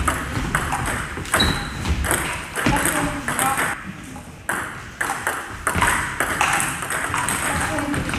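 Table tennis rally: the ball clicking sharply off the bats and the table in a quick back-and-forth exchange, a hit every half second or so.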